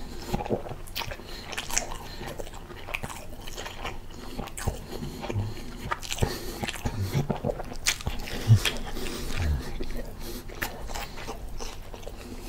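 Close-miked chewing of a turkey burger with cheese in a soft bun: steady wet mouth clicks and smacks, with a few short low thumps in the second half.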